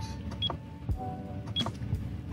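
Four-button LiPo balance charger giving a short, high beep with each button press, twice, as it steps through its charge modes, with faint clicks of the button.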